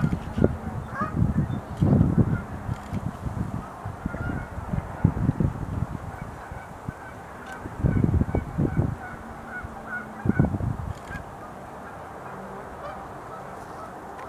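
Distant birds honking: a loose series of short calls repeats through most of the stretch. Irregular low rumbles swell and fade between them.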